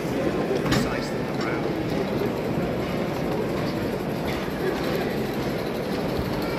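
Live steam garden-scale model locomotive running along the track with its coaches, amid the steady chatter of an exhibition hall crowd.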